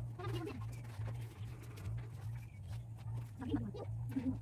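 Bird calls: short, low-pitched calls about a quarter-second in and again near the end, over a steady low hum.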